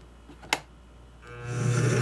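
Pencil point held against a wood blank spinning on a lathe, marking a ring line: a buzzing scratch starts about a second in and grows louder. A sharp click comes about half a second in.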